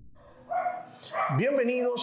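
A man's voice starting an energetic spoken greeting with drawn-out, gliding vowels, about a second in. It is preceded by a short high-pitched sound about half a second in.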